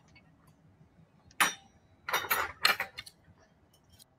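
Cutlery clinking and scraping against a plate: one sharp clink about a second and a half in, then a quick cluster of three more around two to three seconds in.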